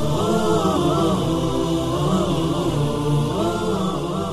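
Vocal intro jingle: chanted voices in harmony, their melody rising and falling over a low held drone.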